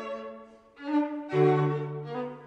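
Background music of bowed strings, violin and cello, playing slow sustained notes. The music fades briefly about half a second in, then a new phrase enters, with a low cello note swelling in partway through.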